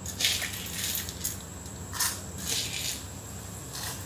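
A few short rattling, scraping sounds of dry split dal grains shifting in a stainless steel kadai, about one every second.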